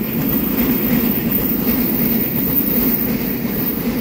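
Twelve-car EMU3000 electric multiple unit passing close by, a steady noise of its wheels and carriages running on the track.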